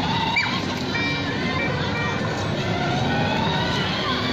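Battery-powered ride-on toy car running along pavement: its small electric motor whining and its plastic wheels rolling, steady throughout, with a faint tone that rises slowly in the second half.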